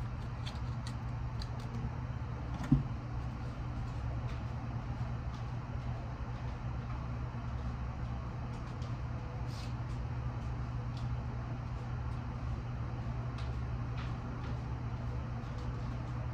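A steady low hum with background noise, broken by one sharp knock about three seconds in and a few faint clicks.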